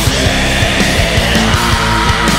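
Loud heavy metal band playing: distorted guitars and bass over fast, dense drumming, with no words picked up.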